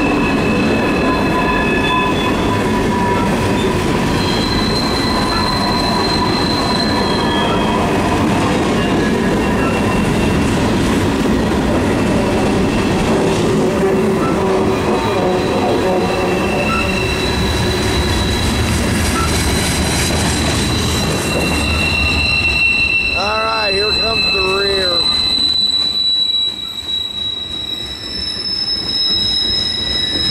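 A freight train's cars rolling past over a steady rumble of steel wheels on rail, with wheel flanges squealing in long, high, steady tones that come and go. The rumble eases a few seconds before the end.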